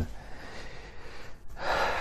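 A man breathing in the pause between spoken phrases, with a louder, audible intake of breath in the second half, just before he speaks again.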